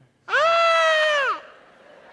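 A person's single loud, high-pitched cry of about a second, held on one pitch and dropping away at the end: a comic stage cry of pain.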